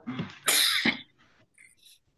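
A person sneezing once: a short voiced intake, then one sharp, loud burst about half a second in. The sneezer has the flu.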